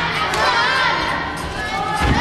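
Spectators shouting and cheering, many voices at once, encouraging a gymnast as she runs into a tumbling pass on the floor exercise.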